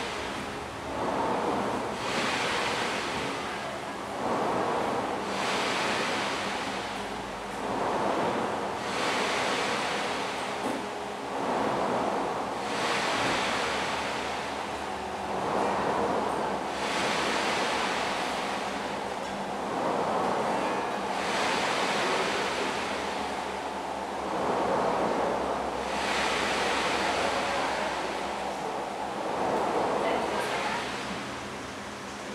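Synthetic breathing made from white noise generated in real time. Soft swells of hiss rise and fall about every two seconds, imitating a recordist's steady breathing.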